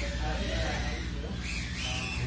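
A steady low hum of the room with faint, indistinct voices over it.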